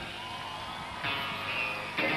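Soft held instrument tones from a rock band on stage between songs, one note gliding slightly in pitch, much quieter than the talk around it.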